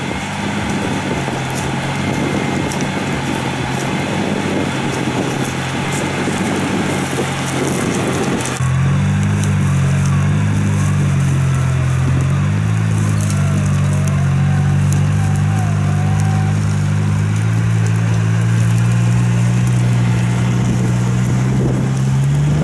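Engine of a modified Suzuki Samurai off-roader running under load as it climbs a steep slope on its winch cable. The sound changes abruptly about eight seconds in to a stronger, steadier low drone.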